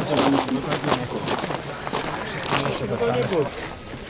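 Indistinct chatter of several voices, with scattered sharp clicks and knocks.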